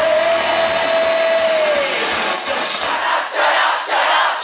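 Live pop-punk band at a rock concert, heard from in the crowd: one long held note that ends about two seconds in, then the crowd screaming and cheering as the music thins out.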